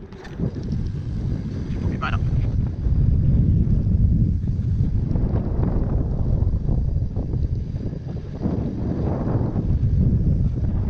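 Wind buffeting an action camera's microphone as a bicycle descends a steep hill at speed: a loud, low rumble that builds over the first three seconds, eases for a moment near the end, then comes back.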